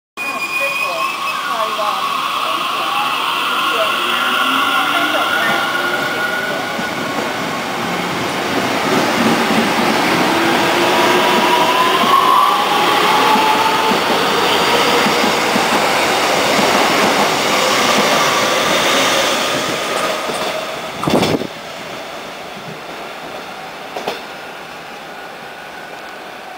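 Taiwan Railway EMU600 electric multiple unit accelerating away from a station: its traction motors whine, rising in pitch as it gathers speed, loud as the cars pass. The sound drops off sharply after a single knock near the end.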